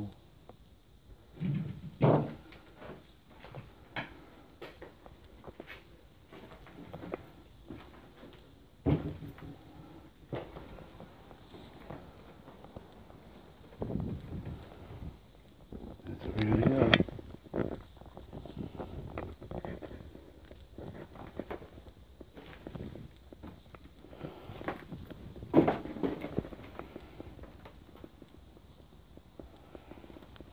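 Footsteps crunching over rubble and loose boards, with scattered knocks and a few louder thumps.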